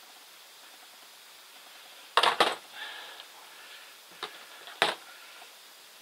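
Pruning cutters snipping through small juniper branches: a quick pair of sharp snips about two seconds in, then two more near four and five seconds, with foliage rustling between them.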